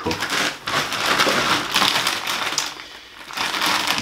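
Plastic bags of frozen vegetables crinkling and rustling as they are handled and swapped, with a dense crackle of the bag film and contents that eases off about three seconds in.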